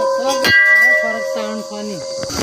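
Temple bell struck about half a second in, ringing on with a clear steady tone over the fading ring of an earlier strike. A person's voice is heard underneath.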